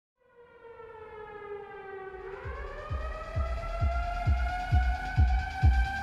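Trailer music opening on an air-raid siren wail: it fades in from silence, sags slightly, then rises to a higher held note about two seconds in. At that point a deep bass kick starts pulsing beneath it, about twice a second.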